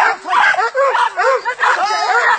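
Dogs barking and yelping repeatedly over men's voices.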